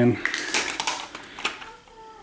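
Light clicks and taps of a handheld Konica Minolta lux meter being handled and set down on a concrete floor, several in quick succession within the first second and a half.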